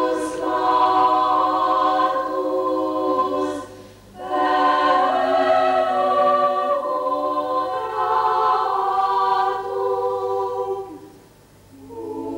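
Secondary-school chamber choir singing unaccompanied, holding sustained chords in phrases, with short breaks for breath about four seconds in and near the end.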